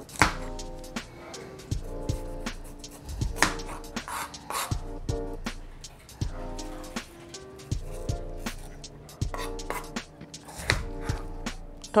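Chef's knife cutting a rocoto pepper on a plastic cutting board: irregular sharp taps and knocks of the blade on the board, several of them standing out, over steady background music.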